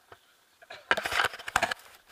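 Close, dense crackling and rustling of the jump harness and rope being handled right at the microphone, starting about a second in.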